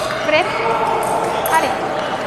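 Indistinct voices carrying in a large hall, with two short, sharp pings, one early and one about one and a half seconds in.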